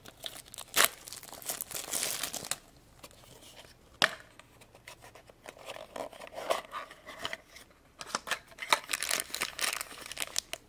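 Clear plastic film crinkling and tearing as it is peeled off a small plastic Twozies blind box, with sharp clicks about a second in and about four seconds in. The film goes quieter in the middle, then more crinkling comes near the end as the box is opened and its contents handled.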